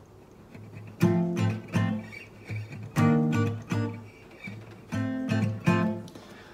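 Acoustic guitar with a capo on the third fret playing triad chord shapes. Strummed chords start about a second in, with a strong strum roughly every two seconds, each left to ring, and lighter strums in between.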